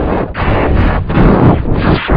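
Very loud, heavily distorted and clipped audio from an effects-edited render, a dense noisy blare broken by short dips about every half to three-quarters of a second.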